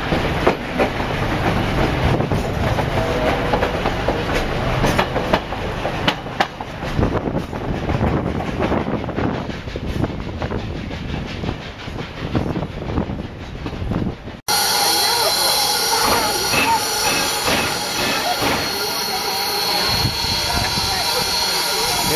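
Narrow-gauge steam train coaches rolling along, wheels clattering over the rail joints with some squeal. About two-thirds of the way in, the sound cuts abruptly to a standing steam locomotive giving off a steady hiss and hum.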